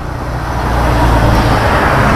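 Road traffic: a motor vehicle passing close by, its engine and tyre noise swelling steadily louder over the two seconds.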